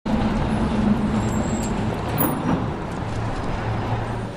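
City street traffic noise: cars running along the road with a steady low hum.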